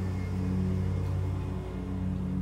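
A steady low hum with several even pitch lines, unchanging throughout.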